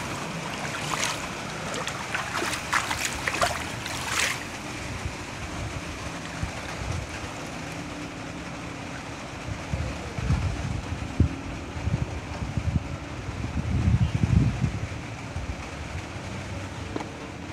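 A stream of water splashing and pattering onto a smartphone and the tabletop for the first four seconds or so, then a steadier wash of water noise with a few low thumps toward the end.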